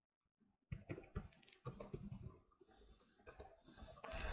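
Computer keyboard being typed on: faint, irregular keystrokes that start about three-quarters of a second in and run on in a quick, uneven patter.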